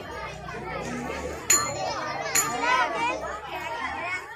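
A crowd of children shouting and chattering, with many voices overlapping and two sudden sharp sounds about a second and a half and two and a half seconds in.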